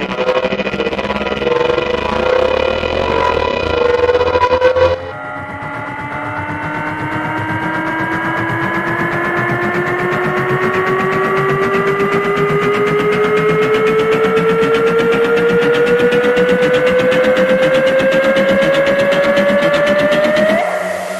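Two cinematic trailer riser sound effects. The first, a pitched tone with noise, cuts off suddenly about five seconds in. The second is a long synthesized tone that climbs steadily in pitch and grows louder with a fast pulse, building to the end.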